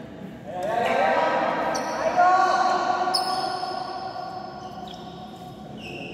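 A voice calling out for a few seconds in a large echoing sports hall during badminton play, with sharp knocks of rackets hitting the shuttlecock about two and three seconds in.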